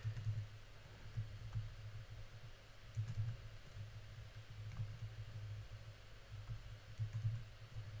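Scattered light clicks of computer keyboard keys, a few seconds apart, over a low steady hum.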